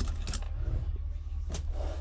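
A few light clicks and a soft rustle of craft supplies being handled, over a steady low rumble.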